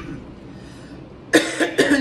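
A woman coughing twice in quick succession near the end, two short, loud coughs about half a second apart.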